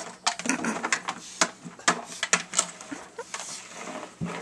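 A pug nosing about inside a clear plastic jar of cheese balls: irregular sharp clicks and rattles of the plastic jar and the cheese balls inside it.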